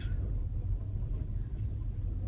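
Vehicle cabin noise while driving along a gravel road: a steady low engine and road rumble heard from inside the car.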